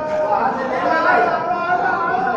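Only speech: several people talking at once, voices overlapping.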